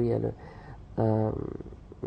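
A woman speaking in a low voice: two short phrases about a second apart, with brief pauses between.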